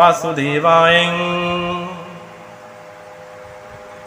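A man chanting a Sanskrit mantra to Krishna, drawing out one long held note that fades away about halfway through.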